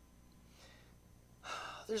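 Quiet room tone with a faint low hum, then about a second and a half in a sharp intake of breath by the speaker just before he starts talking again.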